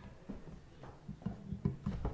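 Scattered soft knocks and bumps in a room, coming thicker and louder in the last second.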